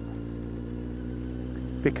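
Kawasaki Z750R's inline-four engine running at low road speed, one steady even note without revving.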